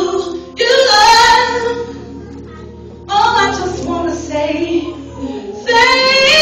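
Live gospel singing in church: a woman's voice leads with a group, in three short sung phrases with brief pauses between them.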